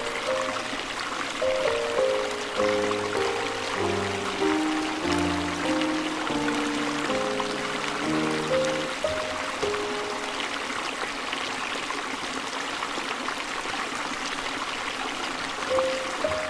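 Steady sound of a flowing river, with a slow, soft instrumental melody of single sustained notes over it. The melody stops about ten seconds in, leaving only the running water, and picks up again at the very end.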